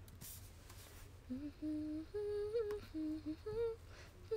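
A woman softly humming a short tune of a few held notes, starting about a second in.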